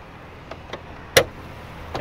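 A single sharp click about a second in, typical of a truck's hood latch releasing, over a low steady rumble.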